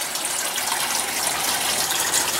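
Steady rush of water running and splashing in an aquaponic system.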